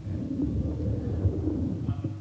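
Microphone handling noise: a low rumbling and bumping that cuts off abruptly at the end.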